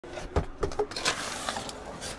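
Rummaging in the back seat of a car: a handful of short knocks and clicks with a brief rustle, as items are handled and moved.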